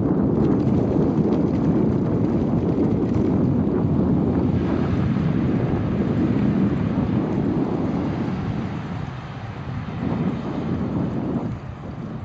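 Wind buffeting the microphone of a camera carried on a moving bicycle, a loud, steady low rumble mixed with tyre-on-asphalt noise; it eases off as the bike slows in the last few seconds.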